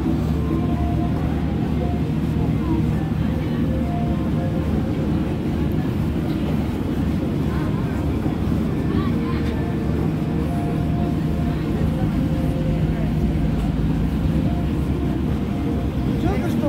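A steady low hum and rumble that stays level throughout, with faint voices of other people underneath.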